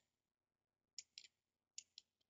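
Faint computer mouse clicks: two quick pairs of sharp clicks, the first about a second in and the second near the end.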